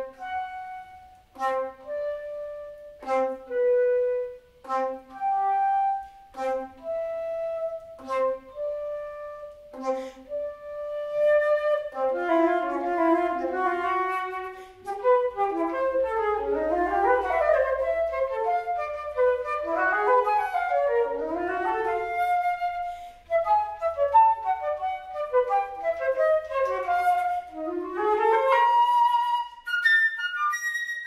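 Solo concert flute playing: at first short, separate notes with sharp attacks and gaps between them, then from about twelve seconds in, fast running passages sweeping up and down.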